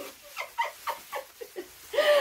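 Plastic bubble wrap rustling with a run of short, quiet squeaks and crinkles as a long sheet is pulled out of a box.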